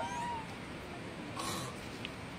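Newborn macaque infant crying with short, high-pitched calls: one gliding call at the start and another about a second and a half in.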